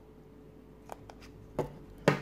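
A few small plastic clicks of a removable battery being prised out of a Samsung Galaxy phone's back, the loudest about one and a half seconds in, over a faint steady hum.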